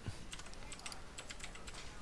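Faint computer keyboard typing: a run of light, irregular key clicks.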